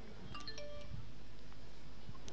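A few faint, short chiming tones at several different pitches in the first second, over a quiet low background.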